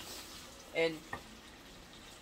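Onions, peppers and tomato sizzling softly in a skillet, with a light tap about a second in.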